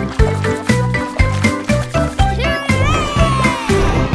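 Children's song backing music with a steady, bouncy beat. About halfway through, one pitched, animal-like call comes over the music: it rises, wavers, then slides down, lasting about a second and a half.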